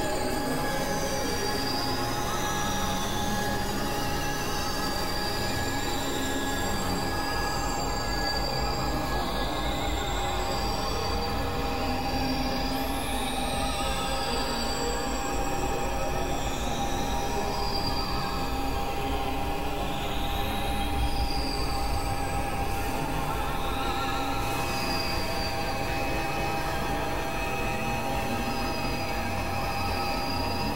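Experimental electronic drone music: a dense, screeching metallic texture over a steady held tone, with wavering high tones. Twice, about a third and two thirds of the way in, a high tone falls in pitch.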